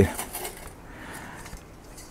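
Faint rustling and a few light knocks as a small metal tower wood stove is picked up from below, then quiet outdoor background.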